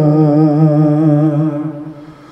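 A man's voice holding one long sung note through a karaoke speaker's wireless microphone with the echo turned up. The note stays steady with a slight waver, then fades out near the end.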